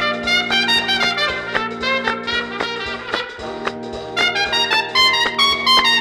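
Dance-band orchestra playing an instrumental passage with a trumpet-led brass section, quick notes over held low chords, on a 1948 78 rpm record. The band grows louder and brighter about four seconds in.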